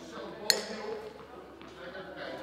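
A single sharp metallic ping about half a second in, a baseball bat striking a ball, ringing briefly in a large echoing hall over faint children's voices.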